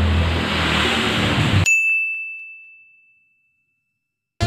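A steady hiss-like background with a low hum cuts off suddenly, and a single high ding sound effect rings out in its place, one clear tone fading away over about a second and a half.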